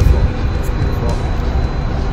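Wind rumbling on the microphone on a ship's open deck, a loud, uneven low rumble, with indistinct voices under it.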